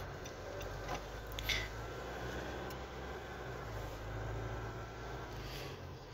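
Steady low hum inside the cabin of a Nissan Navara EL diesel pickup on the move: engine and road noise, with a couple of faint clicks about one and one and a half seconds in.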